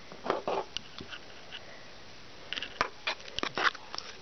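A table knife stirring and mashing a wet mix of crumbled cupcake and milk in a plastic bowl: scattered clicks and scrapes, a few near the start and a busier run in the second half.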